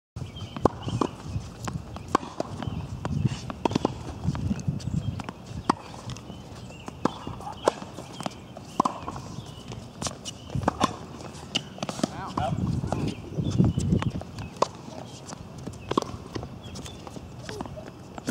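Tennis rally on an outdoor hard court: a string of sharp pops from racket strikes and ball bounces, irregularly spaced, about one every half-second to a second.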